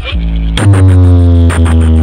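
Electronic DJ music with heavy bass played very loud through a large stacked DJ speaker box during a speaker check. About half a second in, a deeper, louder bass hit comes in under a slowly falling synth tone.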